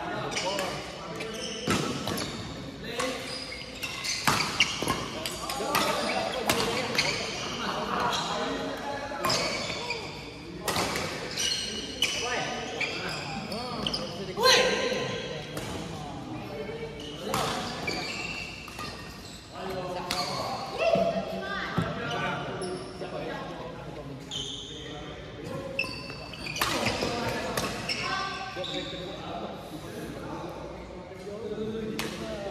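Badminton rackets striking a shuttlecock in repeated sharp clicks, with players' footsteps, echoing in a large indoor hall over indistinct voices.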